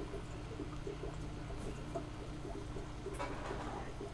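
Quiet steady low hum, with two faint brief soft noises about one and a half and three seconds in.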